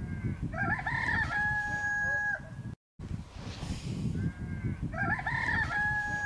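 Rooster crowing twice, each crow a rising, broken opening that ends in one long held note, over a low steady rumble.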